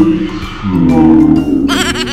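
A comic goat-like bleating sound effect, a long wavering cry that quavers up high near the end, over background music.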